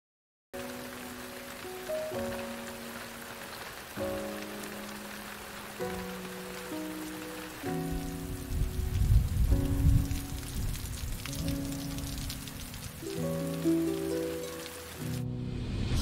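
Steady rain falling, with slow background music of long held chords over it. The music grows louder and deeper around the middle, and the rain stops shortly before the end.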